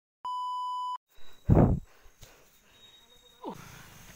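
A steady 1 kHz test-tone beep, the kind played over television colour bars, lasting under a second. It is followed about a second and a half in by a louder brief burst of noise, and near the end by a short tone that glides downward.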